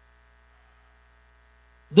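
Faint, steady low electrical mains hum during a pause. A man's voice breaks in loudly right at the end.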